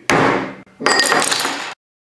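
Hands slamming down hard on a tabletop twice, the second blow with glass rattling and clinking as the shot glass of sake is knocked off the chopsticks into the glass of beer. The sound cuts off abruptly near the end.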